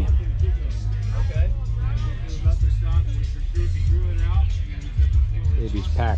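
Music with a heavy, loud bass line and vocals.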